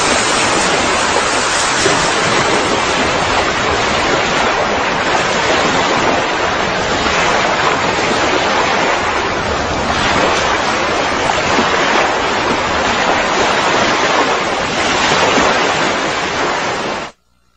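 Steady, loud rushing of wind and surf, an even noise without pause.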